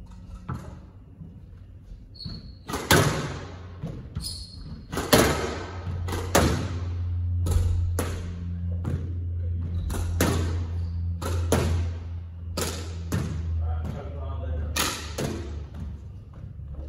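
Squash ball struck by racquets and hitting the court walls: sharp, echoing knocks about once a second, over a steady low hum.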